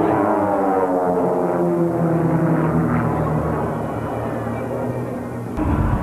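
Piston engines of a formation of aerobatic biplanes droning overhead, their tone sliding down in pitch as they pass. Near the end the sound changes abruptly to a louder, low rumble.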